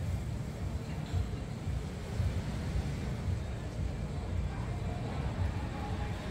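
Wind buffeting the microphone: a low, uneven rumble with no clear tone.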